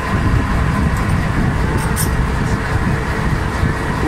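A boat's engine running with a steady low rumble and a faint even hum.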